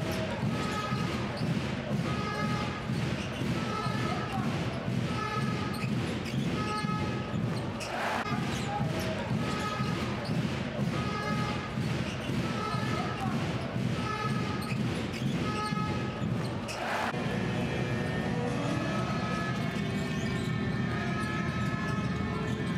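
A basketball being dribbled on a hardwood court, in a steady rhythm of about two bounces a second, over the noise of an arena crowd.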